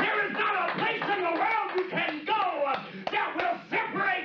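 A man preaching into a handheld microphone, his voice rising and falling sharply in pitch in fast, impassioned phrases.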